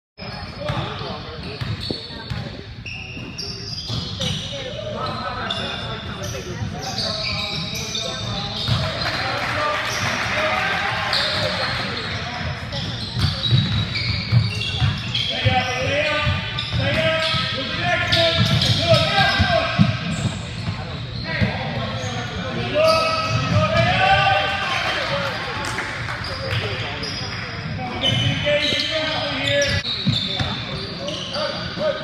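Live sound of a basketball game in a gym: a ball bouncing on the hardwood floor and players and spectators calling out, echoing in the hall.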